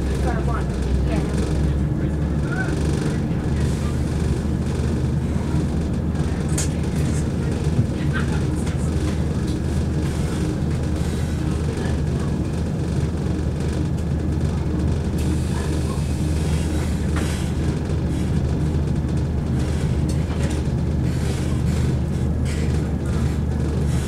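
Southern Class 171 Turbostar diesel multiple unit running at speed, heard from inside the passenger coach: a steady low diesel drone with continuous rumble from the wheels on the track.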